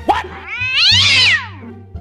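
A cat meowing: a brief rising chirp, then one long call about a second long that rises and falls in pitch.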